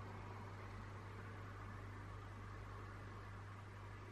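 Faint room tone: a steady hiss with a low, steady hum underneath.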